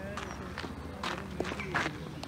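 Irregular footsteps crunching on a gravel cinder pitch, with faint distant voices of players.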